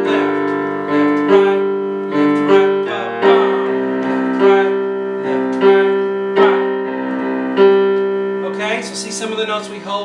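Piano played slowly: minor chords over left-hand octaves, a new chord struck about once a second and left to ring. A voice comes in near the end.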